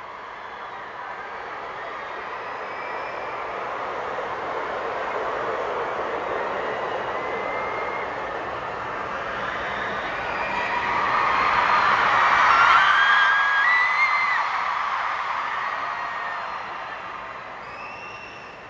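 Arena crowd cheering and screaming. It swells to its loudest about two-thirds of the way through, with single high screams rising above the roar, then eases off near the end.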